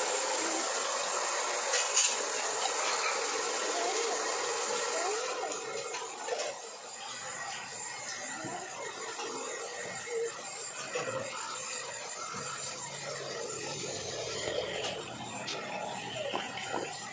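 Handheld electric hair dryer blowing steadily as it dries a wet puppy's fur: a continuous airy whoosh that gets a little quieter after about six seconds.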